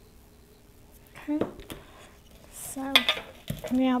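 Clinks and knocks of a metal Bundt pan and kitchen utensils being handled, starting about a second in, with one solid knock about three and a half seconds in. A woman's voice breaks in briefly a few times.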